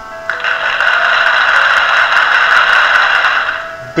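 A drumroll sound effect that starts abruptly about a third of a second in, runs steadily, and fades just before the end, laid over light background music. It builds suspense before a quiz answer is revealed.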